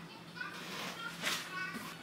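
Faint children's voices in the background, over a steady low hum.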